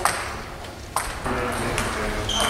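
Table tennis ball striking bat and table: two sharp clicks, one at the start and another about a second in.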